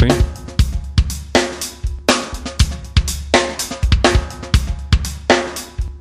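A sampled drum-kit loop of kick, snare and hi-hat plays in a steady rhythm through the UAD Neve 88RS plugin. A band of its EQ is boosted on the snare, so the snare hits ring in the mid-range while the frequency is sought.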